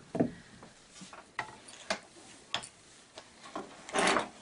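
Fabric shears cutting through tulle: scattered light clicks of the closing blades, with a louder rustle of the fabric being handled at the very end.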